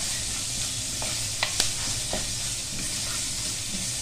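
Food sizzling in hot oil in a pan while being stirred, with a few sharp clicks of the utensil against the pan around the middle.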